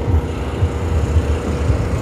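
Engine running with a low, steady rumble and no speech over it.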